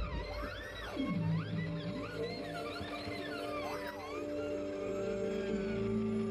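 Violin played live with repeated swooping slides up and down in pitch over held low notes from the band; the slides thin out after about four seconds, leaving the sustained chord.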